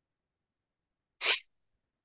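A person sneezing once, a short sharp burst about a second in.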